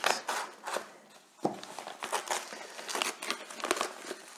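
Plastic courier mailer being slit with a Victorinox Swiss Army knife and pulled open by hand: irregular crinkling of the plastic film.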